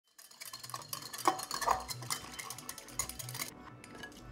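Kitchenware clinking and clattering: utensils knocking and scraping against dishes in a quick, uneven run of small clicks that thins out about three and a half seconds in.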